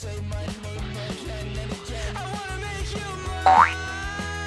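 Background pop music with a steady beat and bass line. Near the end a short, loud sound effect rises quickly in pitch, like a cartoon boing or slide whistle.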